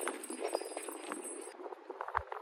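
Sneaker footsteps and scuffs on an outdoor asphalt court: a light, uneven patter of short clicks.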